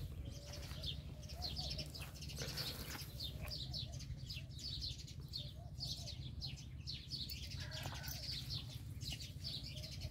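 Small birds chirping, many short high chirps overlapping one another throughout, over a steady low rumble.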